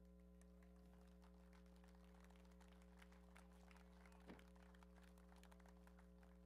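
Near silence: a steady electrical hum with faint, scattered hand claps from a small group.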